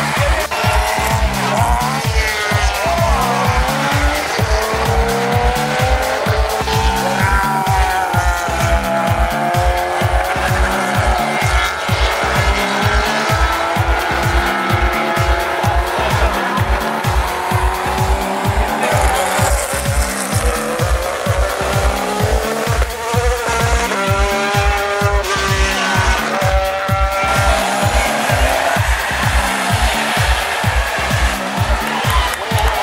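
Racing engines rising and falling in pitch as cars accelerate and brake on the circuit, mixed with background music that has a steady beat. The clearest engine note, a car revving up close, comes about two thirds of the way through.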